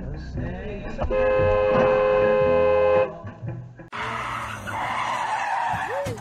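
A car horn sounding in one long, steady blast of about two seconds. It is followed, after a cut, by a loud rushing noise that ends in a short squeal rising and falling in pitch.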